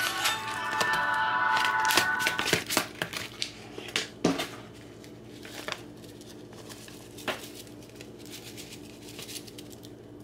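A taco-seasoning packet crinkling and crackling now and then as it is shaken and tapped empty. Steady background music with held notes plays under it for the first two and a half seconds.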